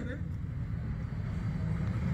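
Low, steady background rumble in a pause between a man's words, the tail of his speech cut off just at the start.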